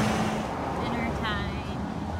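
Road traffic and car noise with a steady low engine hum that stops about half a second in. A brief voice is heard about a second and a half in.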